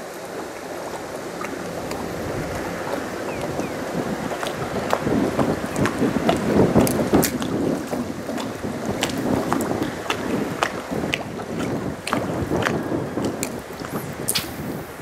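Wind buffeting the microphone out on the water, with water lapping at the bass boat's hull. The wind noise swells loudest in the middle, and scattered light clicks and ticks run through it.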